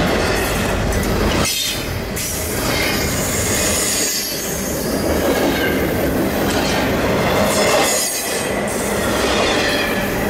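Double-stack intermodal well cars of a freight train rolling past at speed close by: loud, steady wheel-on-rail rumble with faint thin high tones, and a few brief dips as car ends go by.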